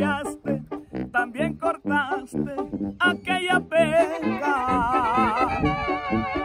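Mexican banda playing an instrumental passage of a ranchera: deep bass notes pulse on the beat under brass, and a melody line with heavy vibrato comes in about three seconds in.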